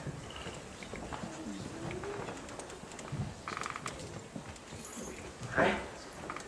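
Faint human sounds on a quiet stage: soft whimpering and sniffing, with a short, louder breathy sound near the end.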